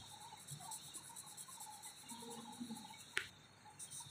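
Faint, steady insect trill, with a single sharp click about three seconds in.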